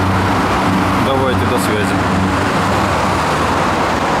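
Yamaha XT1200Z Super Ténéré's parallel-twin engine idling steadily.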